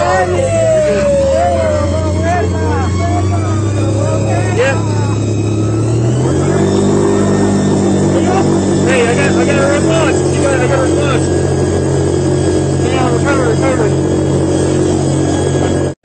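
Patrol boat's motor running steadily, then revving up to a higher pitch about six seconds in and holding there, with people's voices wavering over it.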